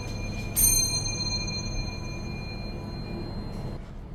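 Elevator chime: a single bright ding about half a second in that rings on and fades over about three seconds, over a steady low hum.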